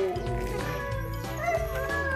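Background music with a steady beat, with a sled dog giving a short whining call near the end.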